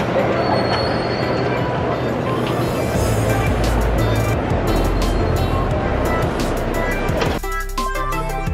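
Background music with a steady bass line, switching abruptly near the end to a sparser, clearer melody.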